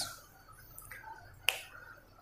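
A single sharp click about one and a half seconds in, against faint room tone.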